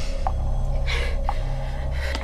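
A person gasping, two sharp breaths about a second apart, over a steady low drone.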